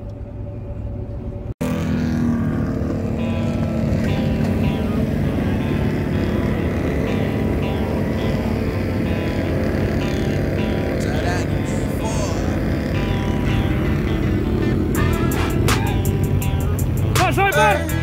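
Off-road vehicle engine running steadily while riding, with music playing over it. A man sings briefly before a cut in the first couple of seconds, and voices shout near the end.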